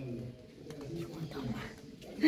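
Faint, low-pitched bird calls in short repeated phrases, over a steady low background hum.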